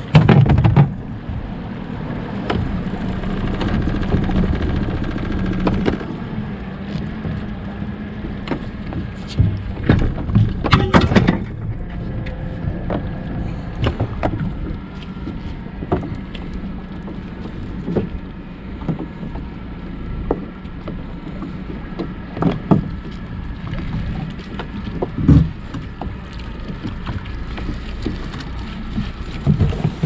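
Yamaha 90 hp outboard motor idling steadily on a small boat, with a few sharp knocks on the hull, the loudest near the start and about ten seconds in, as the trawl line and net are hauled aboard.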